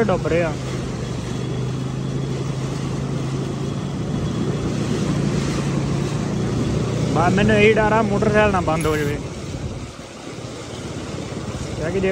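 A vehicle's engine humming steadily as it drives slowly through a flooded street, with the wash and hiss of its tyres in the standing water; the hum falls away about ten seconds in.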